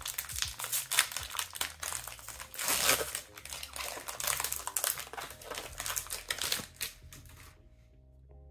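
Plastic foil wrapper of an Upper Deck hockey card pack being torn open and crinkled in the hands: a dense run of crackles that dies away near the end.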